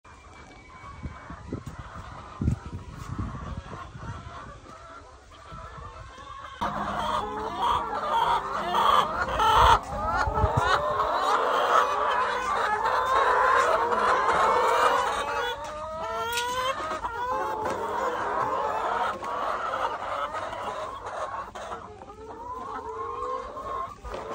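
A flock of brown laying hens clucking and calling together, many overlapping calls. The chorus starts suddenly about six seconds in, after a quieter stretch with a few low thumps.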